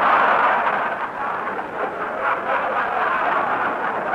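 A large live studio audience laughing, loudest at the start and slowly subsiding, heard through an old broadcast recording with a narrow frequency range.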